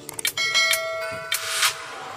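Subscribe-button sound effect in a break of the background music: a couple of quick mouse clicks, then a bell chime ringing for about a second, ending in a whoosh.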